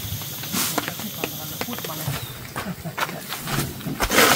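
Irregular crackling and rustling of dry leaf litter, twigs and grass thatch as people walk through it carrying bundles of thatch panels, with faint voices in the background. A loud close rustle of thatch comes right at the end.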